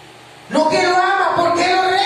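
A man's voice amplified through a PA system, starting about half a second in after a brief lull, in long drawn-out tones between speaking and singing.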